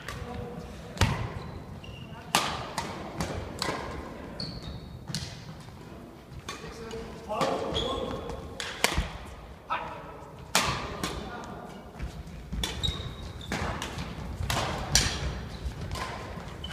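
Badminton rally: rackets striking the shuttlecock in a long run of sharp smacks about a second or so apart, with players' footsteps and a few short shoe squeaks on the wooden court floor.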